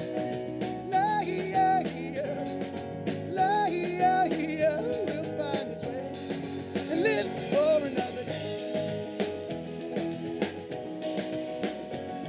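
Live rock band playing: a male singer with electric guitar over drum kit and bass. The singing stops about eight seconds in, leaving the band playing on.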